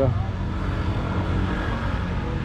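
Steady low rumble of motor vehicles running.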